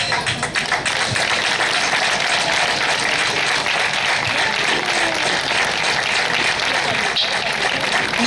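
A crowd applauding, many hands clapping at once in a dense, steady patter.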